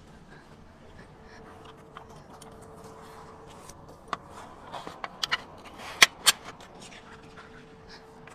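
A few sharp clicks and knocks from tent fittings being handled and fastened at the awning legs, bunched a little past the middle, the two loudest about a quarter second apart.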